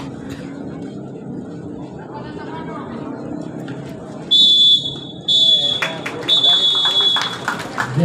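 Referee's whistle blown three times, two short blasts and then a longer one, halting play, over a murmur of crowd voices.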